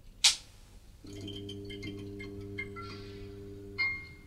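Logo intro sound design: a sharp swish about a quarter second in, then a steady low drone with high tinkling chimes scattered over it, ending in a bright ringing chime.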